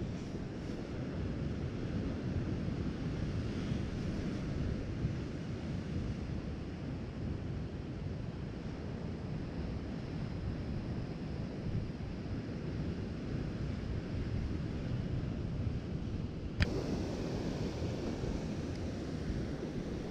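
Steady rumble of sea surf breaking on a rocky shore, mixed with wind buffeting the microphone. There is a single sharp click about three-quarters of the way through.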